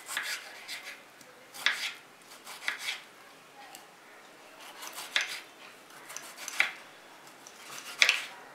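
A kitchen knife slicing through a tomato and knocking down onto a wooden cutting board, about six strokes at uneven intervals.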